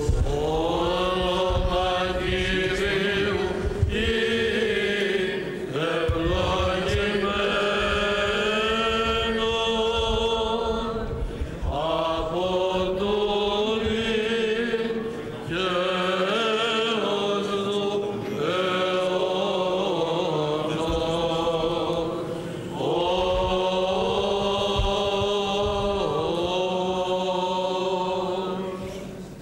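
Byzantine chant sung by a group of Greek Orthodox chanters: long drawn-out phrases over a steady low held drone note, the ison, with short breaks between phrases.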